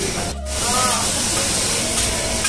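Seafood sizzling on a hot flat-top teppanyaki griddle: a steady hiss that drops out briefly a little under half a second in, then carries on.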